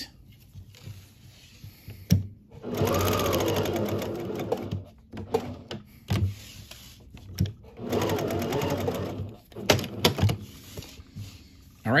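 Domestic sewing machine stitching a fabric tab onto a terry towel in two runs of about two seconds each, with a few sharp clicks between them.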